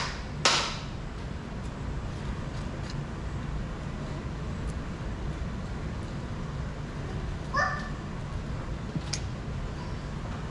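A person coughs twice right at the start, then a low steady room hum runs under a few faint crinkles as a paper margarine wrapper is handled. A brief voice sound comes about three quarters of the way through.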